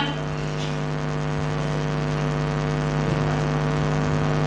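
A steady hum with a buzzy edge, holding one pitch throughout.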